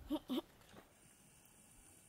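A person's voice makes two very short murmured syllables near the start, then only faint, steady background hiss.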